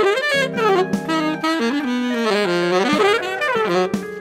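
Saxophone music in two overlapping lines, a higher and a lower one, with notes that bend and slide in pitch.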